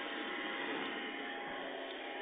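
Faint steady hiss of a telephone line carrying a thin steady tone, with no voice on the line.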